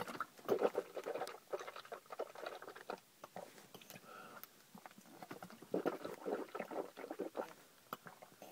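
Water swished around in a mouth from a plastic bottle, rinsing the mouth out, in two bouts of wet sloshing and clicking: one about half a second in and another about six seconds in.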